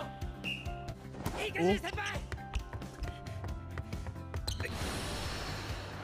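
Anime volleyball match soundtrack: background music with a character's voice and sharp knocks from the play, then a broad rush of noise starting about two-thirds of the way through.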